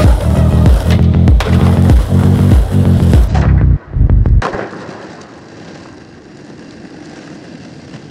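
Music with a heavy beat that stops about four seconds in at a sharp clack of a skateboard landing a stair kickflip on concrete. Skateboard wheels then roll quietly and steadily over the concrete paving.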